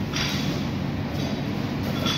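Wrestling practice on vinyl mats: a steady low rumble of the hall with scuffing swishes of bodies and feet sliding on the mats, two or three of them about a second apart.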